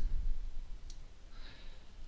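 Quiet room tone with a faint computer mouse click about a second in, followed by a soft breath.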